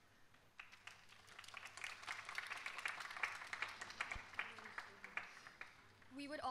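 Audience applauding with many quick hand claps. It starts about half a second in, builds, then thins out near the end.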